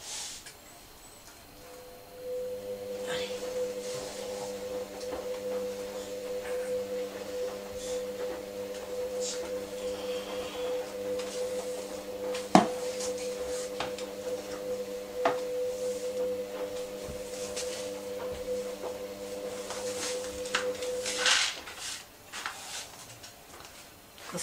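A steady electric hum made of several low tones, like an appliance motor, starts about two seconds in and cuts off a few seconds before the end. Two sharp knocks fall near the middle.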